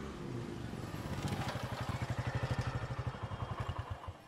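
Motorcycle engine running at low revs as the bike rolls up, its quick, even beat growing louder and then cutting off abruptly at the end.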